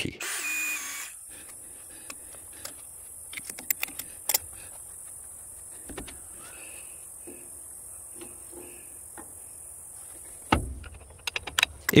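Electric drill running as a small bit drills out a steel cotter key in a valve-gear link pin, a thin whine that stops about a second in. Afterwards only faint scattered clicks and taps, with a louder thump near the end.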